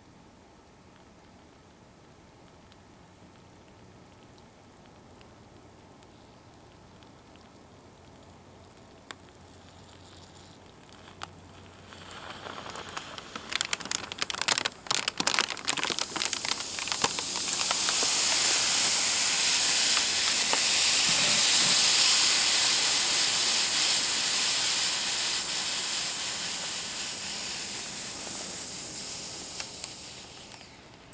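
Flameless heater bag reacting in a bag that started out frozen: faint at first, then about halfway in it starts crackling and sputtering, building into a loud steady hiss of steam escaping from the bag that eases off slightly toward the end.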